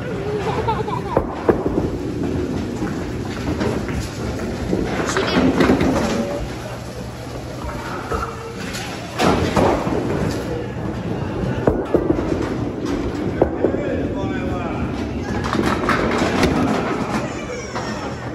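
Bowling-alley din: people's voices talking in the background, broken by several sharp knocks and thuds from balls and pins.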